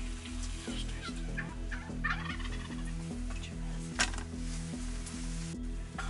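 Wild turkey tom gobbling several times, the loudest and sharpest gobble about four seconds in. Background music with a steady beat runs underneath.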